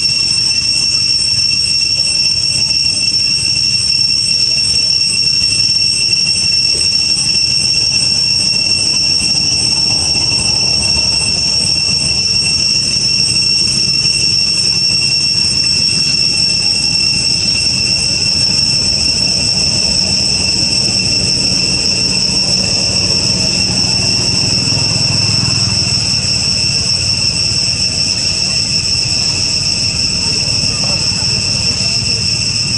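Cicadas droning steadily at a high pitch, an unbroken buzz that holds two tones.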